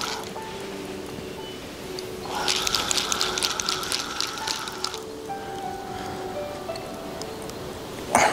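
Fishing reel's drag clicking fast for about two and a half seconds, starting about two seconds in, as a hooked barbel pulls line off against the clutch.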